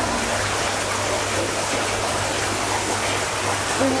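Steady rush of hot-spring water running into an outdoor rock bath.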